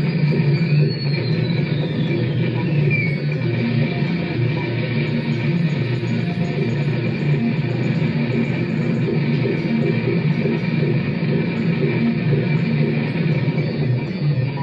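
Improvised experimental electronic sound played through a guitar amplifier: a dense, steady droning texture with a high whistling tone that slides downward over the first few seconds.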